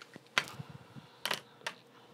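A few sharp clicks and taps as a plastic rotary cutter and an acrylic quilting ruler are lifted and set down on a cutting mat: one about a third of a second in, a double click just after a second, and another shortly after.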